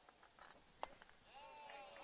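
Near silence, broken by a single faint, sharp pop a little under a second in: a baseball landing in the catcher's mitt for a called strike. A faint distant voice follows near the end.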